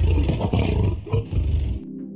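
Big-cat roar sound effect: one long, deep roar that stops abruptly a little before the end, over a quiet music bed.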